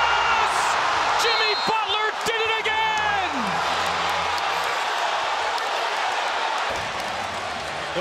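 Basketball arena crowd noise, a steady din of many voices, with short high sneaker squeaks on the hardwood court in the first few seconds as the players work a last-seconds possession.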